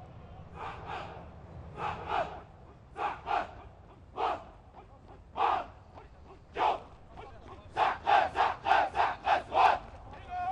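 A jogging formation of commando troops shouting chants in unison: short shouts spaced about a second apart, then in the last two seconds a faster, louder run of about three shouts a second.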